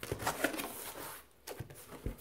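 Hands handling clear plastic-wrapped bags and the flaps of a cardboard box: irregular crinkling of plastic with small scrapes and light knocks.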